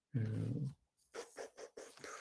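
A man's drawn-out hesitant 'uh' on a video-call audio line, followed by several short, fainter sounds about a second in.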